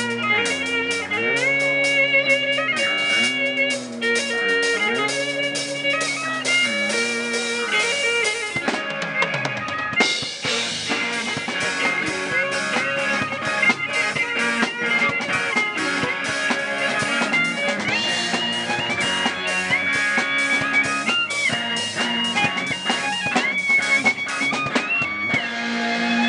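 Live rock band playing through small amplifiers: electric guitar and drum kit with an electric violin playing a melodic line. About ten seconds in the band comes in harder, with a denser wash of cymbals and guitar.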